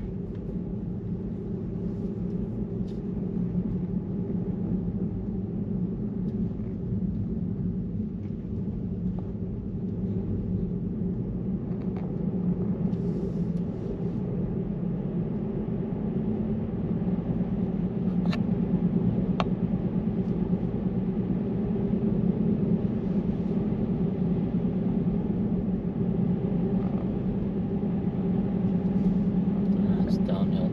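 Steady low road and tyre rumble inside a moving car's cabin on a paved road.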